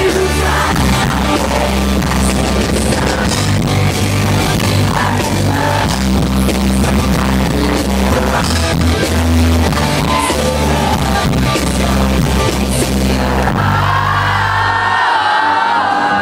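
Live rock band with acoustic guitar, bass, drums and vocals playing a song at a concert. About 14 seconds in, the bass and drums drop out, leaving voices ringing over the lighter accompaniment.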